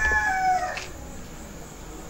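Rooster crowing: the end of one long crow, falling in pitch and stopping about a second in.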